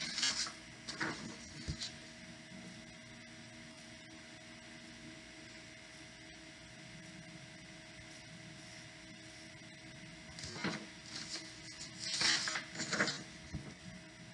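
Large paper sheets rustling and crackling as they are handled and swapped, once near the start and again for a couple of seconds about ten seconds in, over a faint steady room hum.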